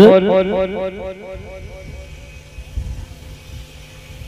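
A man's voice through a PA system with a heavy echo effect: one word repeats in quickly fading echoes for about a second and a half, leaving a faint steady hum.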